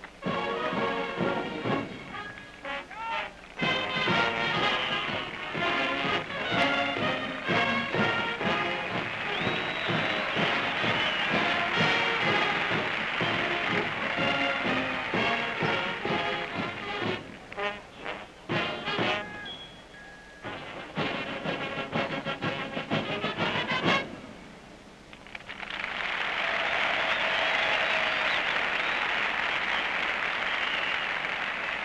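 Marching band playing a brass-and-drums arrangement, the piece ending about 24 seconds in. A couple of seconds later a stadium crowd applauds.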